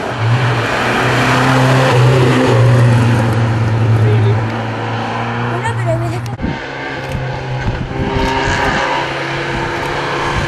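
Classic rally car engines running hard through tight mountain bends. The first car's engine holds a loud, steady note, the sound breaks briefly about six seconds in, and a second car's engine comes in.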